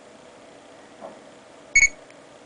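One short electronic beep from a Sony Ericsson Xperia Arc's camera app, near the end. It is typical of the phone's focus-lock tone just before the shutter fires.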